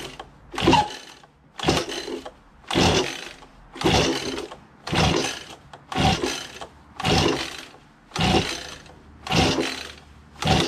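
Recoil starter on an Echo PB-2100 two-stroke leaf blower pulled over and over, about once a second and nine times in all. Each pull is a short whirr of rope and cranking engine that stops dead, and the engine never catches. The owner suspects a sheared key on the fan has thrown the timing off.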